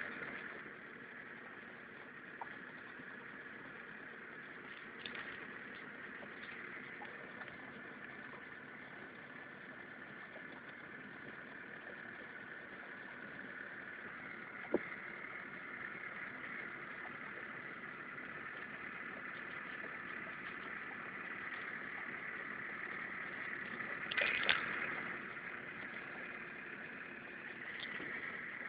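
Small boat's outboard motor running steadily at trolling speed. There is one sharp knock about fifteen seconds in, and a short clatter a few seconds before the end.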